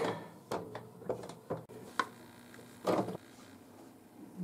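Metal parts of an SVT-40 rifle's forend being handled and refitted: a scattered series of light metal clicks and knocks, with a duller knock about three seconds in.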